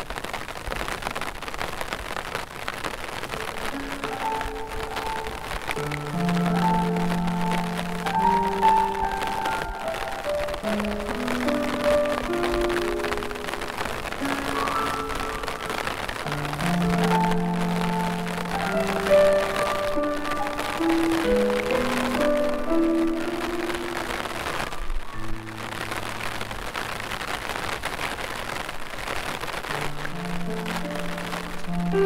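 Slow piano music over steady falling rain: held notes in two unhurried phrases, thinning to a few low notes for the last few seconds, with the hiss of rain throughout.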